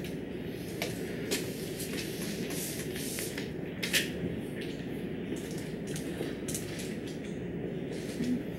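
Whiteboard being erased and written on with a dry-erase marker: short scratchy wipes and marker strokes, a few sharper ones about a second and a half, three seconds and four seconds in, over a steady low room hum.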